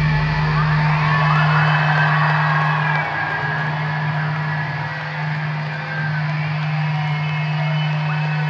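Heavy rock band live in an arena holding a sustained low note as the song closes, the deepest bass and drums dropping away about a second in while the note rings on steadily. The crowd cheers and whoops over it.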